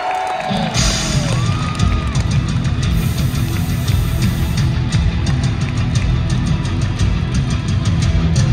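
Live heavy rock from a full band in an arena, heard from the crowd. A softer passage of gliding tones gives way, under a second in, to distorted electric guitars, bass and a steady drum beat.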